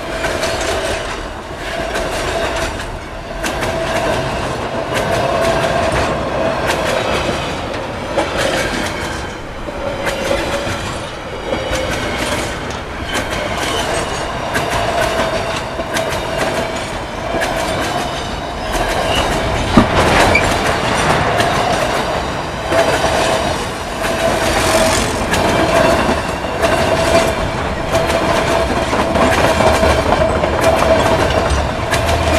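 Empty freight train's hopper and gondola wagons rolling past at close range, wheels clicking over rail joints in a steady rhythm, with an on-and-off high wheel squeal. A single sharp clank about two-thirds of the way through.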